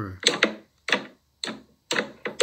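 A fist repeatedly punching a bowl of oobleck (cornstarch and water), which firms up on impact: four sharp wet slaps about half a second apart.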